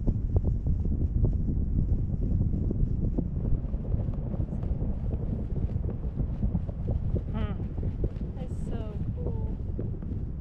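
Steady low rumble of wind buffeting the microphone while hanging beneath a parasail in flight. A voice speaks briefly a couple of times near the end.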